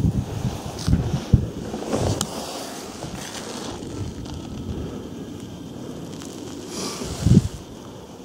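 Wind buffeting the microphone, with footsteps on the tower's wooden stair treads: a few knocks in the first two seconds and a louder thump near the end.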